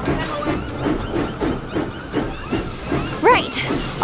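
Steam locomotive sound effect chuffing in a steady rhythm, about four beats a second, with a short rising pitched cry a little past three seconds in.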